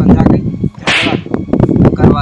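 A single sharp whip-like crack about a second in, over loud, dense lower sound.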